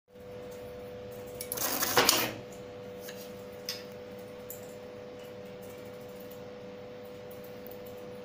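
HY-B02 automatic transformer tape-wrapping machine running one wrap cycle: a loud whirring rush lasting about a second as it winds tape around the transformer core, over a steady hum. A few light clicks follow as the wrapped part is taken out.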